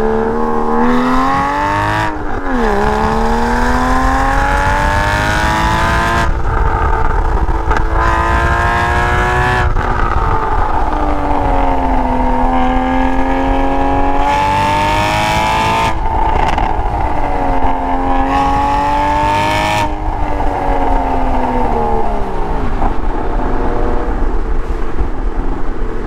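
Porsche 981 flat-six through a Soul Performance valved exhaust, driven hard: the engine note climbs under throttle and drops sharply at each lift or gear change, several times over, with a brighter, harder edge in the loudest pulls.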